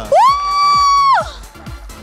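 A high-pitched shriek of surprise, rising, held for about a second and then falling away, over background music with a fast ticking beat.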